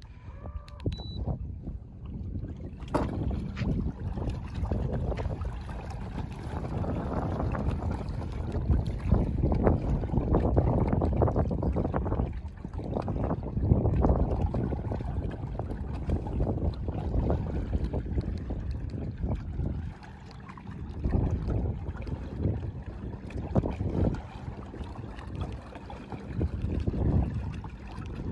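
Wind buffeting the microphone over water lapping against a small skiff's hull, coming in uneven gusts that ease off briefly about twenty seconds in.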